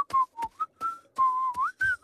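Whistling of a short jaunty tune: a run of brief notes wandering around one pitch, then a longer held note that bends up at its end, with light ticks between the notes.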